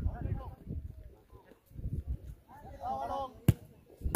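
Scattered voices of players calling on the pitch, then one sharp thud of a beach soccer ball being kicked near the end, the loudest sound.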